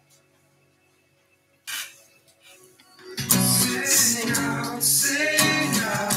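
A Fender acoustic guitar. A chord dies away to near silence, a single strum rings out about a second and a half in, and from about three seconds in, steady rhythmic chord strumming starts again.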